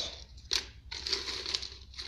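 Cut-up plastic flat ribbon cable pieces rustling and crinkling as a hand rummages through them in a plastic bucket, with a sharp click about half a second in.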